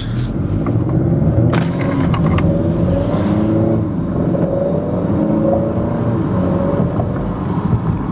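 Turbocharged 2.0-litre four-cylinder (K20C1) of a tuned 2021 Honda Accord 2.0T accelerating, heard inside the cabin. Engine pitch rises steadily, drops once about four seconds in as the automatic upshifts, then climbs again. Near the end the throttle lifts and the turbo's blow-off valve vents, which the driver calls nice.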